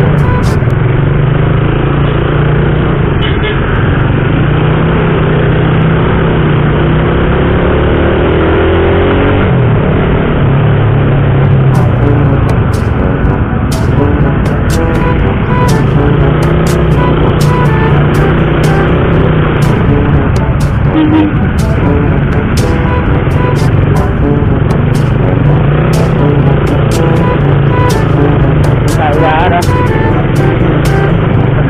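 Suzuki motorcycle engine running through slow traffic, with wind rushing over the helmet-camera microphone; the engine revs up about seven to nine seconds in.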